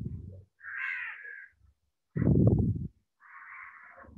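Animal calls: two harsh, roughly second-long calls, about a second and three seconds in, alternating with low, rough bursts. The loudest burst comes a little past two seconds in.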